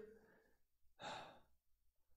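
Near silence broken about a second in by a man's single short audible breath, a sigh-like rush of air without voice, during a pause in speech.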